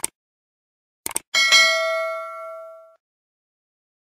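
Subscribe-button sound effects: a mouse click, then a quick double click about a second in, followed by a bright notification-bell ding that rings out for about a second and a half.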